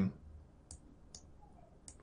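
Computer mouse clicking three times, short sharp clicks spaced about half a second apart, over faint room hiss.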